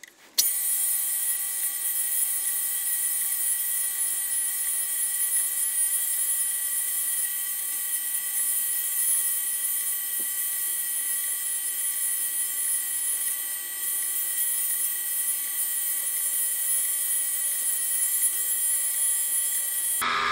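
Tool and cutter grinder running steadily, its fine-grit wheel taking very light grinding passes along the cutting edges of a milling cutter's teeth. The sound comes in suddenly about half a second in and holds even, with a steady motor hum and a high hiss.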